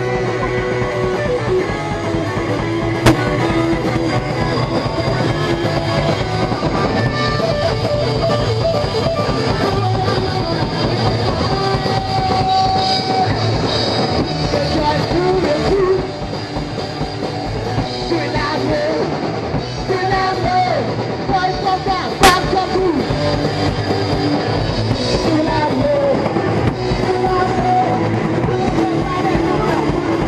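Punk rock band playing live on electric guitars and drum kit, loud and close, recorded from in the room. The level dips briefly about halfway through, and two sharp knocks cut through, one about 3 seconds in and a louder one about 22 seconds in.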